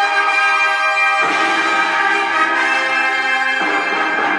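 Orchestral music with brass playing long held chords, starting abruptly. Lower notes join about a second in, and the chord changes near the end.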